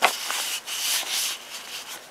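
Paper pages of a photo book being handled and turned, rubbing and sliding against each other: a sharp tap at the very start, then several soft rustling swishes.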